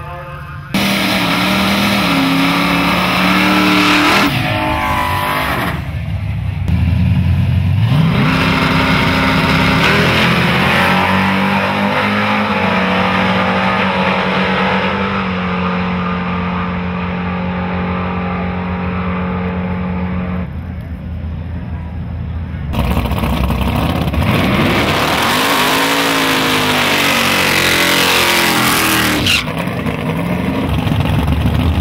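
Drag-racing street cars at full throttle, in several short clips cut together: loud engines whose pitch climbs and then holds high as the cars run down the strip, with sudden cuts from one pass to the next. Near the end, a car revs hard with the pitch swinging up and down.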